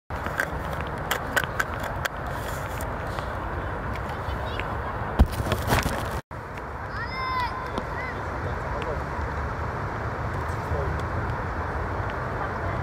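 Outdoor youth football match ambience: a steady background rumble, with a few sharp knocks in the first two seconds and one louder knock about five seconds in. After a brief dropout just past six seconds come distant high-pitched shouts from the young players.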